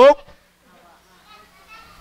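A man's lecturing voice breaks off just after the start, followed by a quiet pause with faint distant voices in the background.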